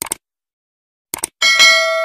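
A short click, a pause, two quick clicks, then a bright bell chime with many overtones that rings on for about a second. These are the sound effects of a subscribe button being clicked and a notification bell ringing.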